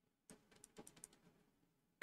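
Faint, quick clicking of typing on a computer keyboard: a short run of light key taps starting about a third of a second in and stopping after about a second.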